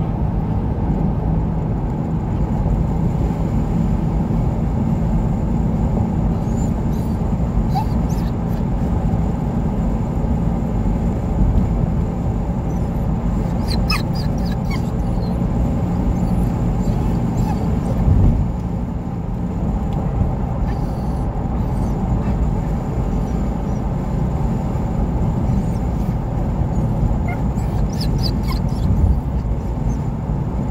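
Steady road and engine noise inside a moving car's cabin, with a dog in the car giving a few brief high-pitched whines, about halfway through and again near the end.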